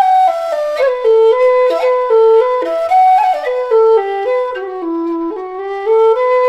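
Low whistle playing a solo melody, one line of held notes in its low register, with quick trill and slide ornaments flicking between some of the notes.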